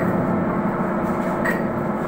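Anchor chain clanking and rattling as it feeds down the chain pipe into a ship's steel chain locker while being heaved in, over a steady machinery hum, with a sharper clank about one and a half seconds in.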